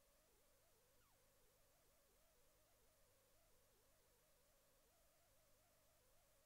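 Near silence, with only a faint wavering tone.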